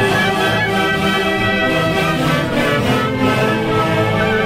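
Large Andean orquesta típica playing a tunantada live: many violins and harps together in a steady, dense ensemble sound.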